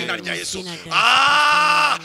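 A man preaching in an impassioned voice, breaking into a loud, long held cry about a second in.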